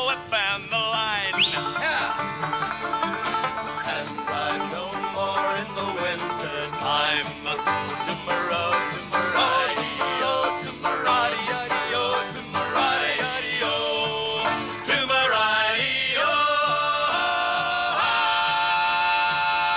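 Live folk-quartet music: banjo and acoustic guitars playing, with voices sliding in pitch near the start and again near the end.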